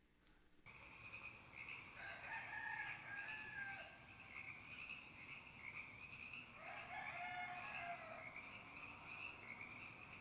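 Faint rooster crowing, two drawn-out crows about two and six and a half seconds in, over a steady high-pitched trilling chorus.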